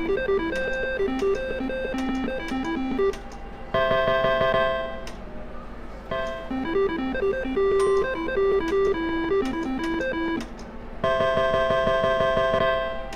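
Dollar Double Diamond nine-line reel slot machine playing its electronic beeping tune while the reels spin, then a bright held chime as a small win is paid. This happens twice.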